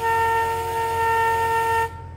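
Vehicle horn sounding one long, steady honk of about two seconds that cuts off suddenly just before the end.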